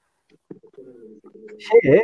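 A faint, low cooing call of a bird in the background of a call line, held for about a second, followed by a short louder sound near the end.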